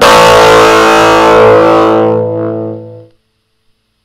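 An electric guitar chord strummed once through an Orange Micro Crush CR3 3-watt combo amp, switched on for the first time with tone and volume at 12 o'clock. It is loud and rings for about three seconds before being cut off.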